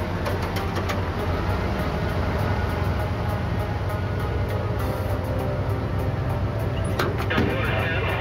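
Vehicle engine idling with a steady low hum under a background music score, with a few sharp clicks near the start and near the end.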